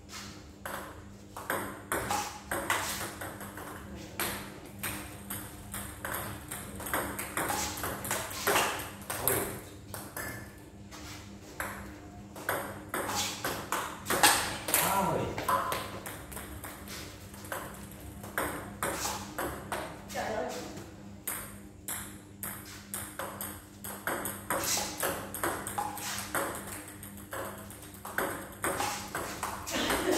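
Table tennis balls clicking off rubber paddles and bouncing on the table in an irregular run of sharp pings during backspin serve practice, with stray balls tapping on the floor.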